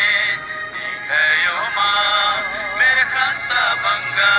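Kurukh Christian devotional song playing: music with a wavering melody line.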